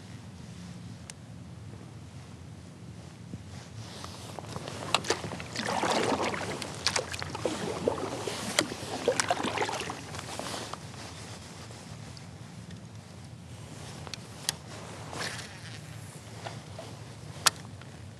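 Kayak paddle strokes: water splashing and dripping from the paddle blades, with a few sharp clicks, loudest from about four to eleven seconds in and quieter after.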